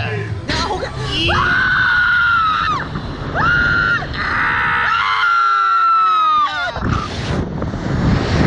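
A rider screaming on a slingshot launch ride as it fires into the air: three long, high screams, the last held for about two seconds and sliding down in pitch. Near the end a rushing noise of air takes over.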